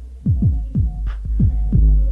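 Hip hop instrumental beat playing from a cassette: deep kick hits that drop in pitch, several in quick succession, over a sustained low bass, with a sharper snare-like hit about every second and a bit.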